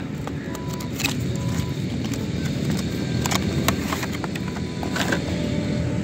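Cardboard box and plastic blister tray being opened by hand: a few sharp clicks and crinkles of packaging over a steady low background rumble.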